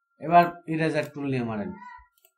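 A man's voice in three drawn-out stretches, the last one falling in pitch.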